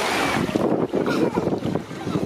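Wind buffeting the microphone over the wash of small waves at the water's edge, an uneven rushing noise with no steady tone.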